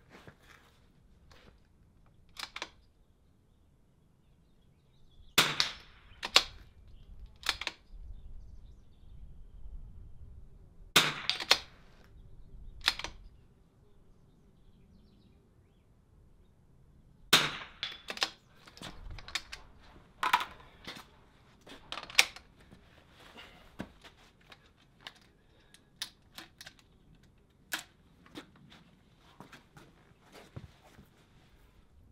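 Shots from a .22LR rimfire bolt-action rifle, sharp cracks spaced a few seconds apart, with quieter clicks of the bolt being worked between shots.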